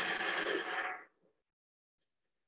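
Electric stand mixer switched on, its motor running as a steady noise for about a second before the sound cuts off suddenly. A viewer thinks the microphone's noise cancelling removes it.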